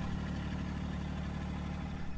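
Massey Ferguson subcompact tractor's diesel engine running steadily with a low, even hum, heard from the operator's seat.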